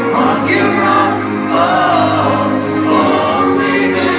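Live rock band playing with sung vocals, recorded from the audience at a concert; the voices hold long, choir-like notes over a steady band sound.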